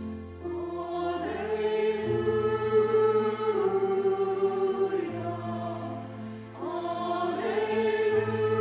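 Mixed church choir of men's and women's voices singing slow, sustained phrases over keyboard accompaniment. The voices swell in about a second in, ease off briefly, then come back strongly near the end.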